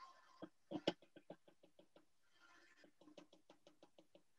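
Faint, rapid ticking from a commercial stand mixer beating stiff cookie dough in a steel bowl, about ten ticks a second, in one run near the start and another near the end.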